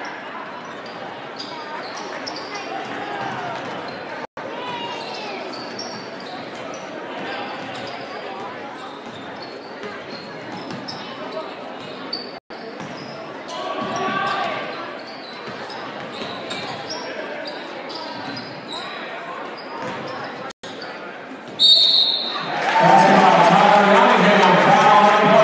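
Basketball game in an echoing gym: the ball dribbling, sneakers squeaking on the hardwood and a murmuring crowd. Near the end a brief high tone, then a loud burst of crowd cheering as a basket is scored.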